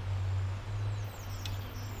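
Outdoor river-bank ambience: a steady low rumble with a few short, high bird chirps about a second in.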